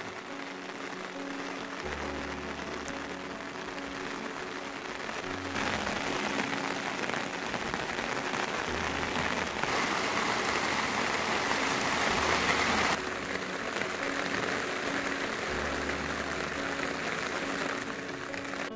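Steady rain, heavier from about six to thirteen seconds, with soft background music of slow, sustained low notes underneath.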